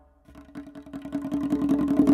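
Tonbak (Persian goblet drum) playing a fast roll of rapid finger strokes that swells from soft to loud.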